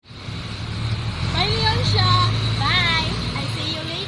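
A young female voice talking in short phrases, over a low rumble that swells and fades across the first three seconds.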